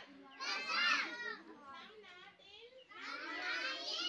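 Children's voices speaking together: a loud phrase about half a second in and another near the end, with quieter voices in between.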